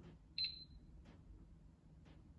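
A built-in electric oven's control panel gives a single high electronic beep about half a second in, fading away over about half a second. It is the power-up beep: the oven comes back to life now that the faulty oven switch has been replaced.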